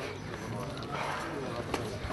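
Faint murmur of people's voices in the background, with a single sharp click about three-quarters of the way through.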